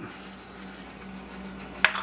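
A removed plastic agitator cover set down with one sharp click near the end, over a steady low hum.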